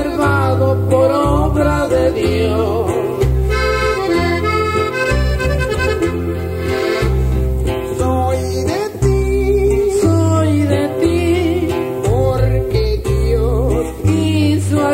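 Norteño music: an accordion carries the melody over bass notes and plucked strings, in what sounds like an instrumental passage between sung verses.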